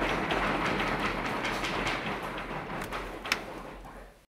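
Audience applause, a dense patter of many hands, fading out near the end.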